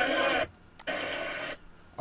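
Audio from a church service broadcast being played back: a steady, reverberant sound that cuts off abruptly about half a second in, then a second short snatch that also stops abruptly.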